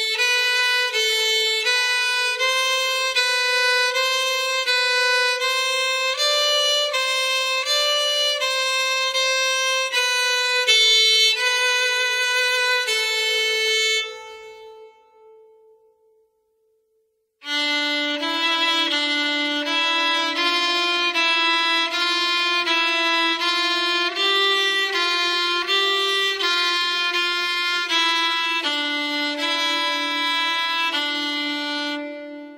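Solo violin playing a slow practice exercise in long bowed notes of about a second each. The first phrase rings away to silence about 14 seconds in; after a pause of about three seconds a second phrase begins, lower in pitch.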